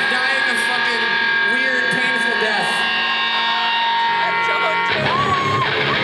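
Live rock band's amplified sound: a held chord rings steadily over crowd voices shouting and screaming. The held chord stops about five seconds in, and a louder shout rises over the room.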